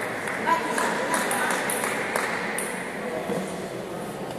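Table tennis ball clicking off bats and table in a quick rally, about eight hits in the first two and a half seconds, then stopping. The clicks echo in a large hall, with voices in the background.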